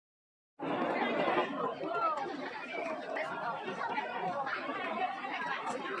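Silence for about half a second, then the steady chatter of a large crowd, many voices talking over one another.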